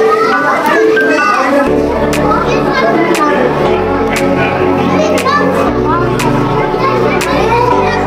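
Children's voices, chattering and calling out, over background music; a bass line and a steady beat come in about two seconds in.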